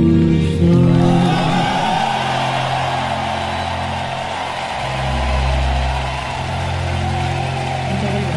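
A male singer's last held note ends about a second in. A soft sustained orchestral chord lingers under a large arena audience cheering and applauding.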